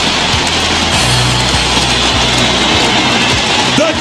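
Arena music with steady bass notes playing over crowd cheering during basketball player introductions.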